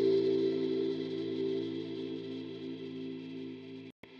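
Sustained, slowly evolving synth-like pad chord from the Candyfloss granular sample instrument for Kontakt, preset 'Traces Of Whimsy', played from a MIDI keyboard. It fades gradually and cuts off suddenly near the end, as the next preset is loaded.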